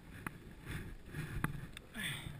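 A red Honda CRF dirt bike being worked through a muddy rut: a low, uneven rumble with a few sharp knocks, the first a quarter-second in and two more near the end.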